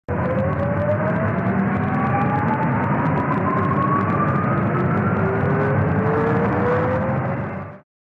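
Synthesized intro riser sound effect: a dense rumbling noise with tones that rise slowly in pitch throughout, cutting off suddenly just before the end.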